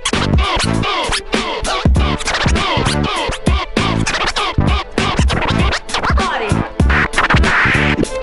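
A vinyl record scratched by hand on a turntable, the sample sweeping up and down in pitch and chopped into quick cuts at the mixer, over a drum beat.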